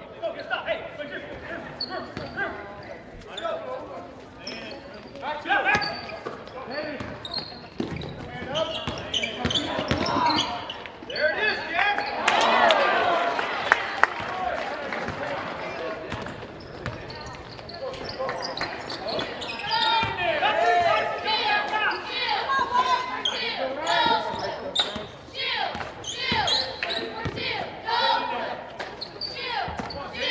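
A basketball dribbling and bouncing on a hardwood gym floor during live play, with repeated sharp bounces. Voices of players and the crowd carry and echo through the gymnasium around it.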